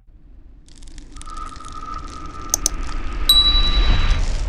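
Sound effects for a subscribe-button animation: a swelling noise that grows louder throughout, a held chime tone from about a second in, two quick clicks a little after two and a half seconds, and a higher ding near the end.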